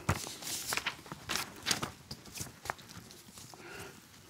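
Handling of paper lecture notes and a few footsteps: irregular soft rustles and light clicks, about a dozen in four seconds.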